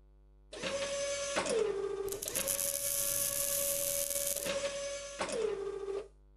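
Small wooden educational cube robot's electric drive motors whirring as it moves: a steady whine that dips lower in pitch about a second and a half in and again near the end, with a harsher, higher whir in the middle.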